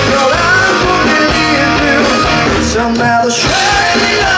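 Live rock band playing loud over a PA: drum kit, electric guitars and bass, with a male voice singing.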